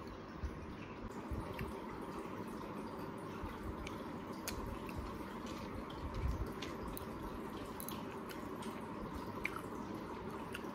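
Soft, wet mouth clicks and smacks of someone chewing a chocolate brownie, a few faint clicks scattered through, over a steady low room hum.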